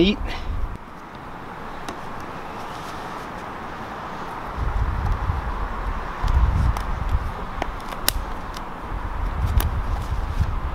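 Steady outdoor background hiss with low rumbling stretches from about halfway, and a few faint clicks as parachute suspension lines are pulled through rubber-band stows on a deployment bag.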